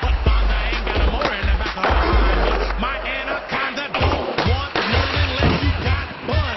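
Skateboard wheels rolling with sharp clacks and knocks from the board, over loud music with singing and a heavy bass.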